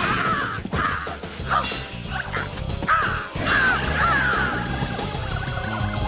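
Harsh crow-like squawks from the costumed monsters, several in a row, loudest about three to four seconds in, over action background music, with a few sharp fight hits early on.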